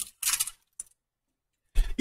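A brief rattle and clink of small hard objects being handled, then a single faint click.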